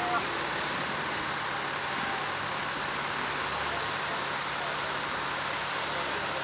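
Tractor engine running steadily under an even, unbroken noise, with faint voices in the background.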